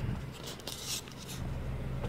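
Honda R18A four-cylinder engine idling steadily, heard as a low hum from inside the Civic's cabin, with a few brief rustles of the handheld phone in the first second.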